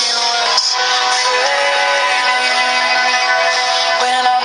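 Pop-country song: a singer holds long notes over full band backing.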